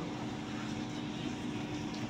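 Room tone: a steady hiss with a faint, even low hum.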